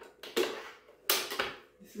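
Clicks and knocks from a Kenwood stand mixer as its head is unlocked and tilted up, the mixer now switched off. The loudest clunk comes a little after a second in.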